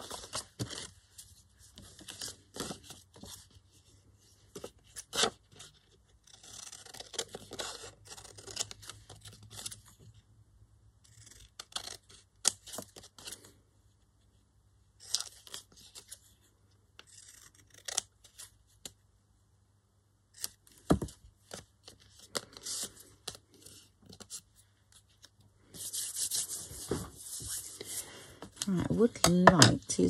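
Paper handled at a craft table: scraps rustled and smoothed by hand, sharp scissor snips cutting card, and a longer stretch of paper tearing near the end.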